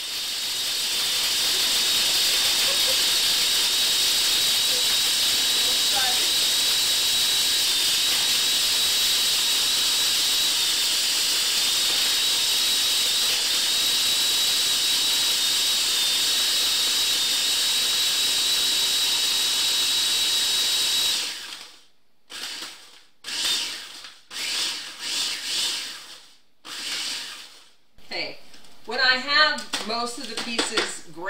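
Food processor motor running steadily as it grinds dry, hard leftover gingerbread into crumbs for ginger flour: a loud, even whir with a thin high whine. It cuts off about 21 seconds in and is then run in several short pulses.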